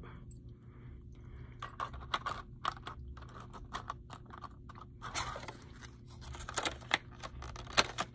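Plastic bait packaging crinkling and clicking as a soft plastic swimbait is worked back into it by hand: irregular rustles and small clicks, busier in the second half, with one sharper click near the end.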